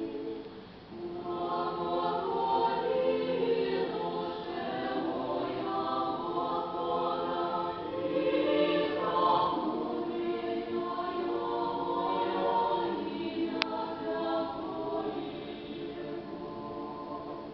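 Mixed choir of men's and women's voices singing Russian Orthodox sacred music a cappella, in long held chords. The singing drops briefly about a second in before the next phrase, and there is a single faint click near the end.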